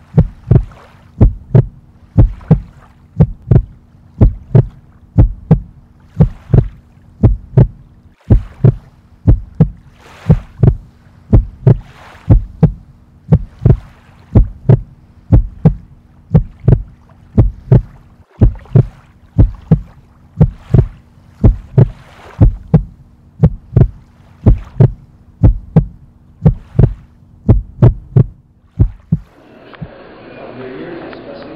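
A deep, steady thumping beat, about two thumps a second, over a faint low steady hum that stops just before the end.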